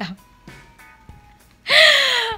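A woman's loud, drawn-out exclamation breaking into laughter about a second and a half in, its pitch falling, after a quiet pause.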